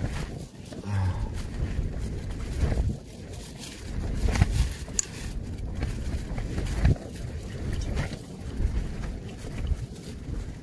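Strong wind gusting against a tent, buffeting the microphone with a low rumble that swells and fades every second or two, with the tent fabric flapping in sharp snaps.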